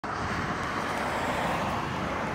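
Steady outdoor road-traffic noise, an even rushing hiss with no beat or voices.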